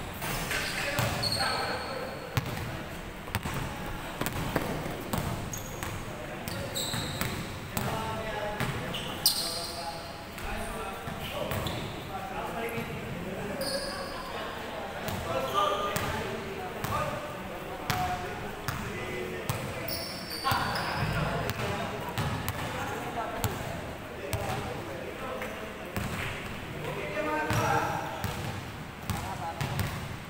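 Basketball game on an indoor court: a ball bouncing, players' voices calling out, and short high squeaks at several points, all echoing in a large hall.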